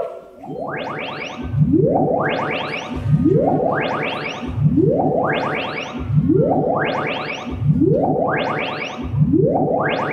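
Electronic stage sound effect played over the hall speakers: a rising sweep that glides from low to high, repeated about once a second.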